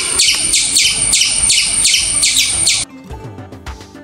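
A rapid series of high, downward-sweeping chirps, about four a second, given as the call of a Uinta ground squirrel. It cuts off sharply nearly three seconds in, over soft background music.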